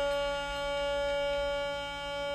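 Harmonium holding one long, steady reed note at the close of a melodic phrase, as accompaniment to a Tamil folk-drama song.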